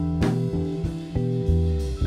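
A rock band playing an instrumental passage live: electric bass, keyboard and electric guitar holding sustained notes over a drum kit, with two sharp drum-kit strikes, one just after the start and one near the end.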